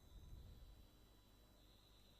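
Near silence: faint room tone with a slight low rumble.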